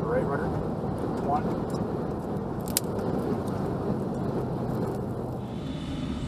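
Steady rushing jet noise of a Lockheed U-2 spy plane touching down and rolling along the runway, with a low steady hum underneath. The sound changes character slightly near the end.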